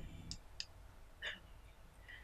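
A few faint short clicks in a pause between sentences, over a steady low room hum.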